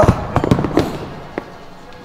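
A pair of heavy rubber-ended Rogue dumbbells dropped onto the gym floor at the end of a flat dumbbell press set. A loud crash comes right at the start, followed by several smaller knocks as they bounce and settle.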